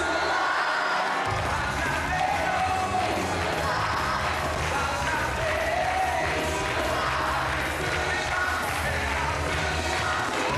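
A church congregation cheering and singing together over music, with many voices overlapping. A steady low bass line comes in about a second in.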